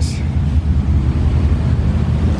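Wind buffeting the microphone outdoors: a loud, uneven low rumble.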